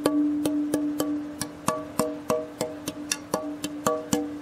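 A thin rosewood board (a guitar pickguard blank) tapped about fourteen times, three or four taps a second, each tap ringing on in one sustained tone with a few fainter overtones. The long ring shows it is very resonant tonewood.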